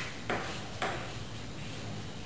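Table tennis ball in play, clicking off paddle and table: two sharp clicks about half a second apart.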